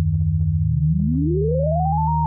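FL Studio's 3x Osc synthesizer holding a steady low drone of pure tones. From about halfway in, one tone glides smoothly upward in pitch as a MIDI controller knob linked to the synth is turned.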